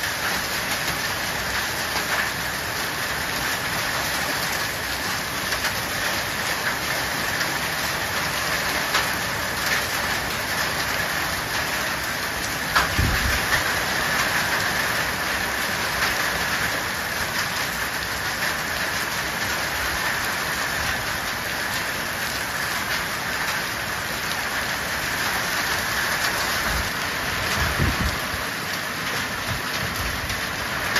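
Heavy rain pouring onto paving and puddles: a steady, dense hiss with scattered sharp drop impacts. A low, louder thump comes about 13 seconds in and again near the end.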